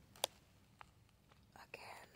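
A soft whisper near the end, after a sharp click about a quarter second in and a fainter click a little later.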